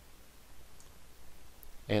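Two faint computer mouse clicks over a low, steady hum. A man's voice starts just at the end.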